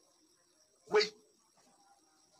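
A single short bark-like yelp about a second in, brief and sharp, over faint background hum.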